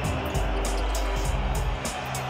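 Background music with a steady beat and a pulsing bass line.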